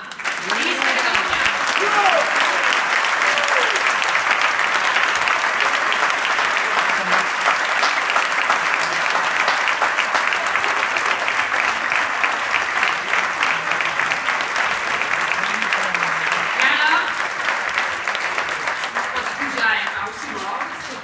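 Large crowd applauding: a long, steady round of clapping, with a few voices calling out now and then.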